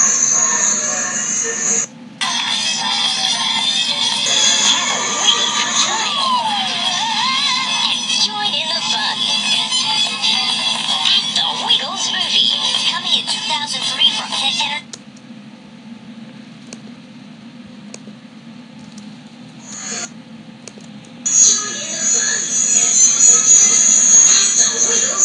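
Music and voices from a children's video playing through laptop speakers, thin with no bass. About fifteen seconds in it drops to a quiet stretch, and it comes back loud about six seconds later.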